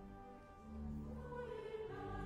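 Church choir singing, with low held notes sounding underneath the voices. The singing swells a little about a second in.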